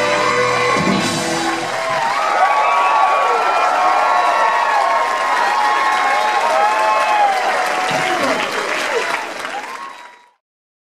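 A rock band with horns holds its final chord, which stops about two seconds in. A concert crowd then cheers, shouts and applauds. The sound fades out near the end.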